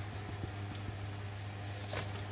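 Grated Parmesan shaken from a plastic shaker container onto a bowl of soup: a few faint, light taps over a steady low hum.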